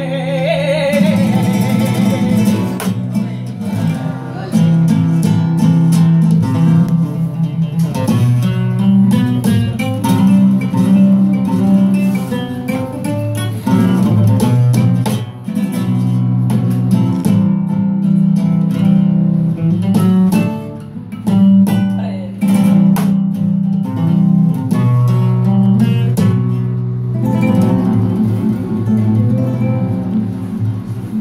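Flamenco guitar playing a cartagenera, a solo passage of plucked melody with sharp strummed chords, after the woman's sung phrase ends about a second in.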